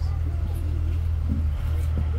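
Bus engine running with a steady low drone heard from inside the passenger cabin, with faint passenger voices in the background.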